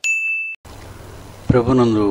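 Bright electronic ding sound effect from a like-button animation: one clear tone held about half a second, then cut off sharply. A man's voice starts speaking about a second and a half in.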